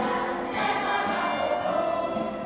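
Children's choir singing in unison, holding long notes.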